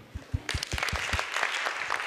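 Audience applause that starts about half a second in and fills the room, over a few louder, close claps about five a second from hands clapping right by the microphone.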